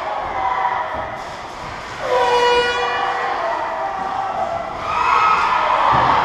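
An ice-rink horn blasts once, suddenly, about two seconds in, holding a single steady note for about a second before fading. It sounds over a background of crowd noise, which swells into louder cheering near the end.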